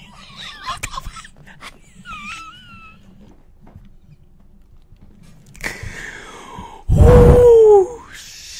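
A man laughing uncontrollably in wheezing, high squeals that break off into a quiet gasping pause. Near the end he lets out a very loud, drawn-out cry of laughter that falls in pitch.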